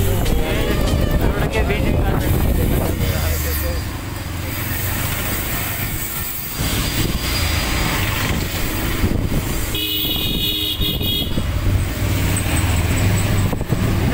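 Ride noise from a two-wheeler moving along a town street: a steady low engine and road rumble with wind on the microphone. About ten seconds in, a vehicle horn honks once for about a second.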